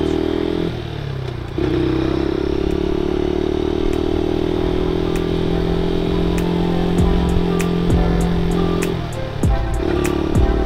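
125 cc motorcycle engine running at a steady cruising speed, with a short drop in engine note about a second in, as at a gear change, before it settles back to an even drone.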